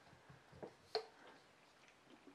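Small plastic paint bottle being handled, with one sharp click about a second in, a softer tap just before it and faint handling noises.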